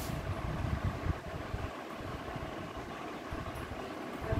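Steady, low, uneven rumbling background noise.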